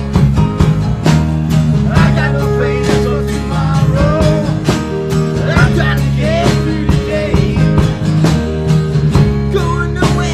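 A rock band playing live acoustically: a strummed acoustic guitar keeping a steady beat over a bass line, with two men singing together.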